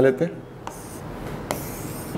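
Writing strokes on a board as lines are drawn: a low, even rubbing with a brighter scraping stroke near the end.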